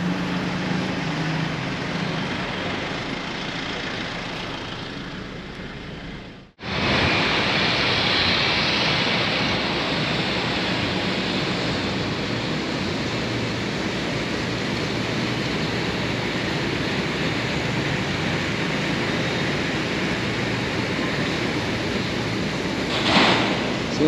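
Steady rumbling noise of a moving car, fading away over the first six seconds, then after a sudden break a steady outdoor rush like wind on the microphone, with a brief swell near the end.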